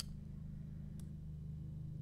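A steady low electrical hum, with a sharp click of computer controls at the start and a fainter click about a second in.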